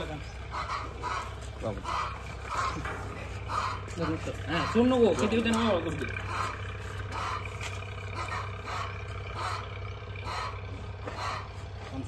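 Buck goat bleating, one loud wavering call from about four and a half to six seconds in, over a steady low hum and faint short repeated chirps.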